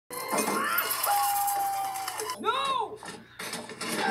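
Animated-film soundtrack: a busy, hissy mix of sound effects and wordless voice sounds, with a steady high held tone for about a second and then a short rising-and-falling vocal cry a little past halfway.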